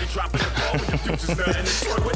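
Hip-hop song with a man rapping over a beat with heavy bass.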